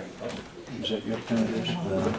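Indistinct talking: several voices in conversation, low and unclear.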